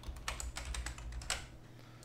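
Computer keyboard being typed on: a quick, uneven run of key clicks that stops about a second and a half in, over a faint steady low hum.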